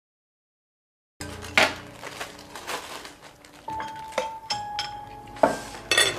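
Dishes and cutlery clinking and knocking at a table, starting about a second in, with a sharper knock near the end.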